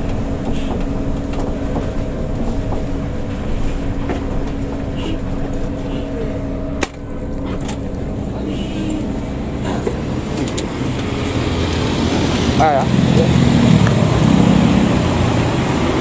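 Cabin noise of a Hino RK coach on the move: a steady engine drone and tyre noise on wet road, with a brief sharp knock about seven seconds in.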